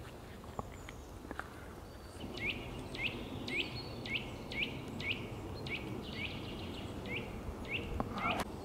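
Eurasian nuthatch singing a run of about eleven evenly spaced whistled notes, each dropping in pitch, roughly two a second, starting about two seconds in.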